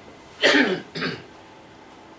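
A man coughs twice in quick succession: a longer cough about half a second in, then a shorter one.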